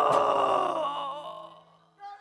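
A live rock band's song ending: a held final note with a cymbal hit near the start, ringing out and dying away over about a second and a half.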